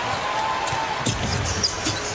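A basketball being dribbled on a hardwood court, a few bounces over the steady murmur of an arena crowd.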